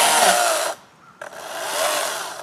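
Chainsaw cutting into a fallen tree limb in two bursts of about a second each, with a short near-silent pause between them.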